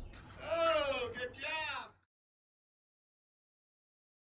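A person's voice giving two drawn-out, wordless exclamations, then the sound cuts off abruptly to dead silence about two seconds in.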